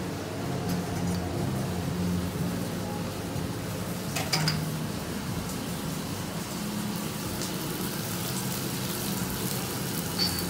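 Busy café kitchen ambience: a steady mixed background of low voices and kitchen noise, with a brief clatter of dishes about four seconds in.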